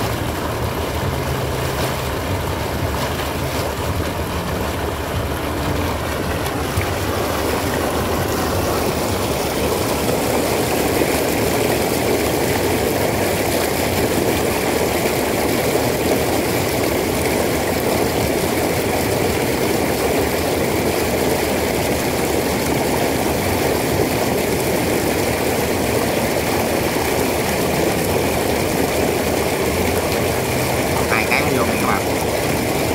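Sand-and-water slurry gushing steadily out of the open end of a sand-dredging discharge pipe, a constant rushing that grows a little louder about eight to ten seconds in.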